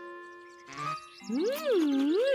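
Cartoon soundtrack music: soft held notes with a light tinkle. About a second in, a loud swooping tone takes over, gliding up and down twice.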